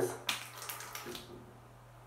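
Damp hands rubbing a lump of jelly face mask (Lush Birth of Venus) between the palms to work it into a paste, giving a few short wet rubbing sounds in the first second that then die down.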